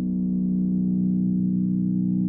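Electronic music: a low, sustained synthesizer drone, a chord of steady tones held without change.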